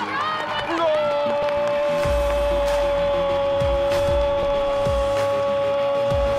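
A football commentator's long drawn-out goal cry, held on one note for about five seconds. Background music with a steady thumping beat comes in underneath about two seconds in.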